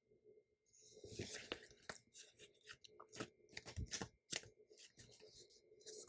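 Handling of a sticker book's stiff paper pages: a run of crisp crackles and clicks that starts about a second in and goes on as the pages are leafed through.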